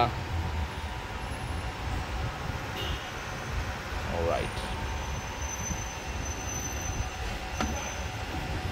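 Steady low hum from a Toyota Aqua hybrid's engine bay with the car switched on and its coolant pumps running, circulating coolant through the system. A faint, thin high whine comes in for about two seconds past the middle.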